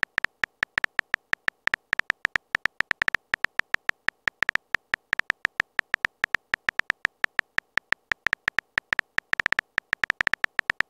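Phone keyboard tap sound effect, one short click for each letter typed, coming quickly and unevenly at about six or seven a second with silence between.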